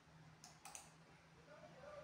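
Near silence with a few faint clicks just over half a second in.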